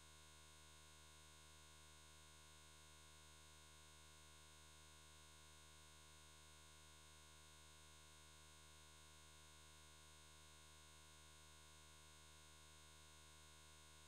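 Near silence: a very faint, unchanging steady tone.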